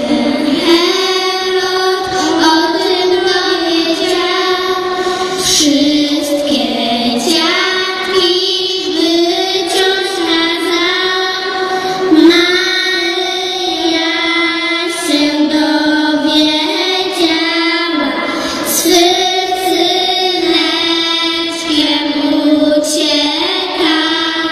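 Young girls singing a Polish Christmas carol into microphones, amplified through a PA, with music behind them.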